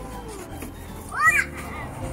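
Young child's voice: a soft drawn-out sound at the start, then a brief high-pitched squeal about a second in.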